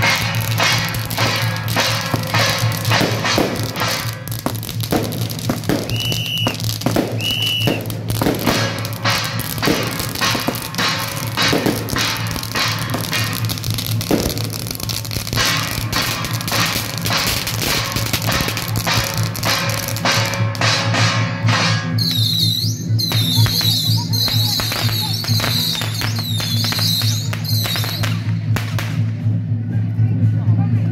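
Strings of firecrackers crackling densely over procession music with gongs, which carries a steady low drone. Near the end the crackling thins out and a high, wavering melody comes in.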